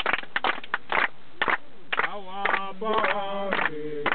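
A group of people clapping hands, loosely together at first; about two seconds in, several voices start singing over the clapping.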